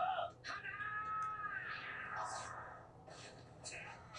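Anime audio playing quietly: a high-pitched voice gives one drawn-out cry about half a second in. It rises and falls in pitch over about a second and a half, followed by fainter short vocal sounds.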